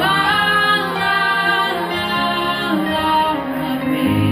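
Two young female voices singing a ballad together into handheld microphones, closely in unison, over a backing track, holding long notes.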